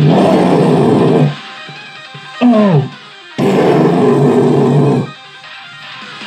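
Heavy metal music: loud, dense distorted guitar in two long blocks, with a short falling slide between them and quieter playing around.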